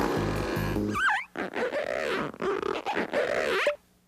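Cartoon background music stops about a second in, followed by a quick wavering pitch glide. Then comes a run of warbling, wobbly comic sound effects that cut off shortly before the end.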